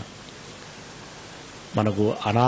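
Steady background hiss during a pause in a man's speech, with his voice starting again near the end.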